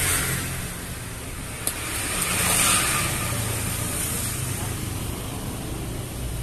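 A motor vehicle's engine running nearby, with a steady low hum that swells louder about two and a half seconds in, as if passing by.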